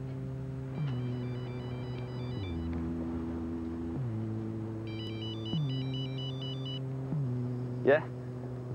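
Electronic telephone ringer trilling twice, each ring a two-second burst of rapidly alternating high tones. Underneath runs a low synthesizer drone that slides down in pitch and restarts about every one and a half seconds. A short, loud rising sweep comes near the end.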